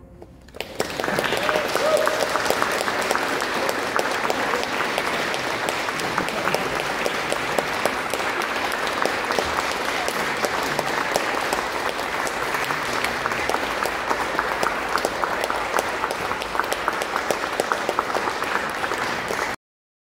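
Audience applauding in a large church. The clapping starts about a second in, holds steady and dense, and cuts off suddenly near the end.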